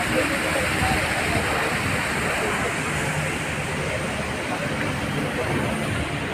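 Steady rushing of fast mountain water, an even roar with no breaks, with faint voices of people mixed in.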